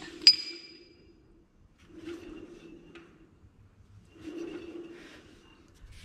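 A sharp metallic clink right at the start. Then a gooseneck trailer's bare hub and brake drum is spun by hand three times, each spin a low whirr of about a second on its tapered wheel bearings: a check of the bearing preload just set on the hub nut.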